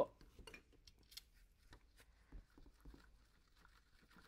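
A paintbrush stirring watered-down vinyl glue in a glass bowl, giving faint, irregular clicks and taps of the brush against the glass as the glue is thinned.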